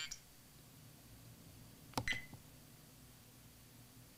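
A VIOFO Mini 2 dash cam's button is pressed with a click, and the camera answers with one short beep about two seconds in. Otherwise near silence.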